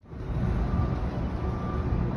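Outdoor city street noise cutting in suddenly: a steady low rumble of traffic with wind buffeting the phone's microphone.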